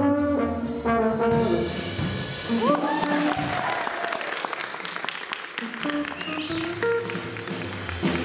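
A live jazz band with brass (trombone, trumpet) plays a phrase, then audience applause takes over through the middle, with a short rising glide about three seconds in. The brass and band come back in near the end.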